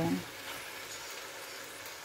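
Salmon pieces sizzling steadily in hot oil in a cooking pot, being sautéed before any water is added.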